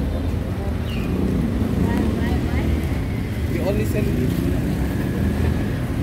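Busy street ambience: a steady low rumble of traffic and engines, with faint voices of passers-by in the background.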